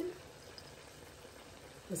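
Curry chickpea gravy simmering in a frying pan, a faint steady bubbling.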